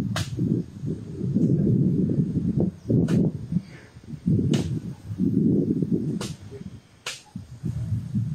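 A tree-cutting tool at work, recorded on a phone: bursts of low rumbling noise, broken by a few sharp cracks at irregular moments about a second or more apart.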